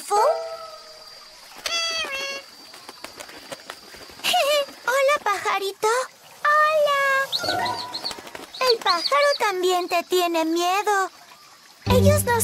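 Animated characters' wordless vocal sounds: several short bouts of pitched, sliding voice-like calls with pauses between them.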